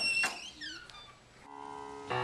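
High squeaks that slide in pitch, with a sharp knock near the start, then a few falling squeaks. About one and a half seconds in, music with sustained keyboard-like chords begins.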